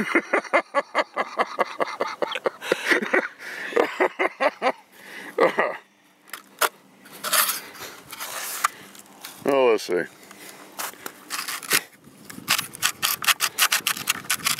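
A man laughing for the first few seconds, then rubbing and scraping as hands work a mud-caked UTS-15 shotgun whose action is jammed up with mud.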